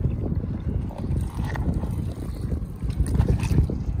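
Wind buffeting the microphone: an uneven low rumble throughout, with a few faint rustles and clicks from seaweed and stones being handled.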